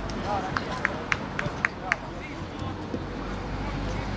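Outdoor football pitch ambience with distant voices of players and coaches calling, under a steady low rumble. In the first two seconds a quick series of six short, high chirps sounds, about four a second.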